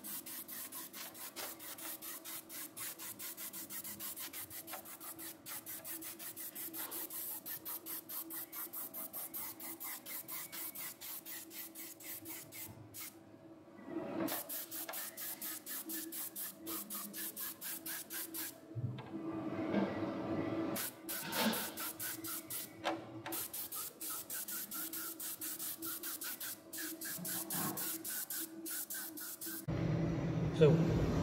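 Compressed-air paint spray gun spraying PVA (polyvinyl alcohol) release agent as a second thin coat onto a fiberglass mold. The air hiss has a fast, even pulse and stops briefly a few times as the trigger is released.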